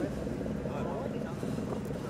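Street ambience: indistinct voices talking over a steady low rumble of traffic.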